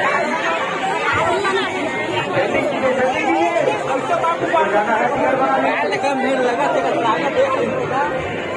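Crowd chatter: many voices talking over one another at once, steady and fairly loud, with no single voice standing out.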